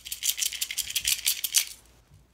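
Small clear plastic bag crinkling and rattling in rapid crackles as a necklace set is handled and taken out of it; it stops near the end.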